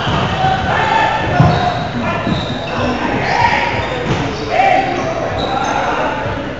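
A volleyball rally in a large gym hall: the ball is struck and hits the hardwood floor, with a sharp hit about a second and a half in. Players shout calls to each other throughout.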